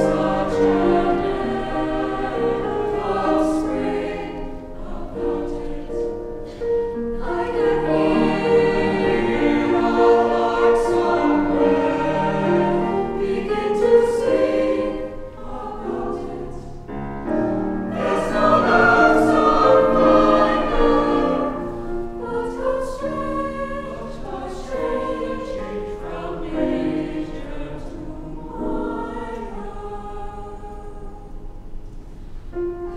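A small mixed choir of women's and men's voices singing together in several parts, in phrases that swell and ease, loudest about two-thirds of the way through.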